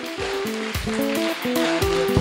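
A congregation clapping, an even crackle of many hands, over instrumental music playing a run of steady notes.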